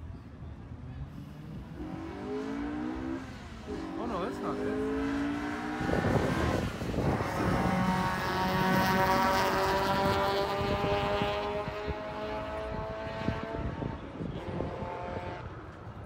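Street-legal drag cars running the quarter-mile: engines revving up under hard acceleration, the pitch climbing and then breaking off about four seconds in. A louder, steadier engine note follows from about six seconds and fades near the end.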